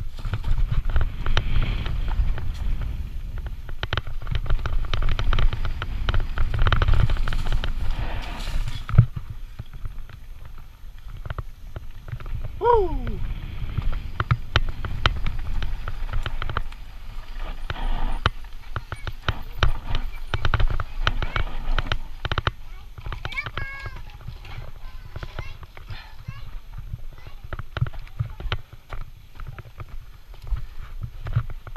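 Full-suspension Santa Cruz Nomad mountain bike rattling down a rough, rocky dirt singletrack: tyres crunching over dirt and stones with dense clicks and knocks from the bike, over a low wind rumble on the helmet-camera microphone. It is loudest in the first nine seconds, then eases off.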